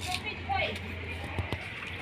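A brief pause in the talk: a steady low hum under a short faint voice about half a second in, then two light clicks a little past the middle.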